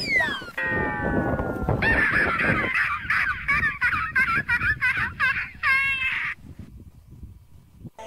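A comic sound effect: a falling whistle-like tone, then a run of repeated bird-like honking calls, about two a second, that stops abruptly about six seconds in.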